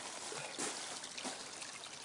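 Water trickling steadily through an aquaponics system of IBC-tote grow beds and a pond.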